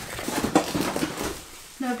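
Plastic and cardboard packaging being handled, an irregular crinkling and rustling with small clicks.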